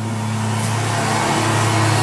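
A steady low machine hum with a hiss over it, growing slightly louder through the stretch.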